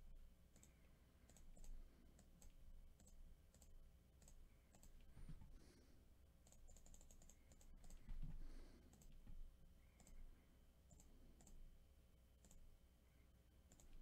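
Faint, irregular clicks of a computer mouse and keys, with a quick run of clicks about seven seconds in and a soft low bump about eight seconds in.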